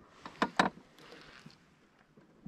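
Two sharp knocks about a fifth of a second apart, then a short soft hiss: handling noise of a fishing rod and reel against a small boat.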